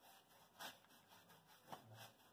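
Near silence, with a few faint short scratches of a paintbrush stroking paint onto a textured mortar wall.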